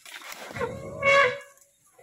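Asian elephant calling: a single trumpet call of about a second and a half that starts low and builds to a loud, high blast about a second in, then breaks off. It is a greeting call between two elephants meeting again.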